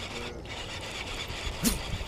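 Baitcasting reel being cranked steadily to bring in a hooked bass, its gears giving a continuous rough whir.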